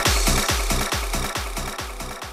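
Psytrance electronic dance music: a fast rolling bassline pulsing several times a second, gradually fading down in level.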